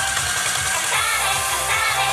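Upbeat idol-pop song played over a stage PA, with a steady drum beat and bass under a bright synth and guitar backing.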